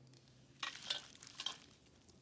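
Quiet crinkling and rustling of wrapped candy being handled, a few short crackly rustles starting about half a second in.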